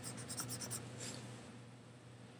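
Faint scratching and light ticks of fingers handling the camera close to its microphone, dying away to near silence after about a second and a half.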